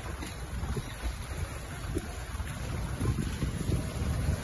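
Gusty rumble of wind on the microphone, mixed with muddy floodwater sloshing and splashing as several people wade through it.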